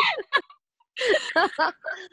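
Several people laughing over a video call, in two bursts: a short one at the start and a longer one about a second in.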